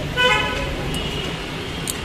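A vehicle horn gives a short toot near the start, over a steady low hum of city traffic.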